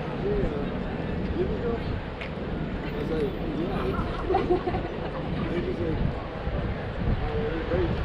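Outdoor city ambience on an open square: voices of people talking nearby come and go over a steady low rumble.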